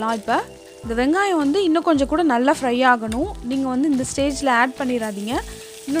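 Background music: a wavering melodic line over a steady held tone and a low beat about twice a second. Onions sizzle as they fry in oil underneath.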